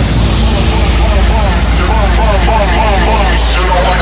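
Intro of an uptempo hardcore track: a heavy, steady sub-bass drone under a harsh, noisy, wavering synth texture. A high whistle sweeps down near the end, and no kick drum is playing yet.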